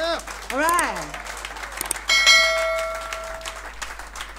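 Outro sound effects: a short voice-like call that swoops up and falls away, then a click and a bell-like ding that rings for about a second and a half, as in a YouTube subscribe-button animation.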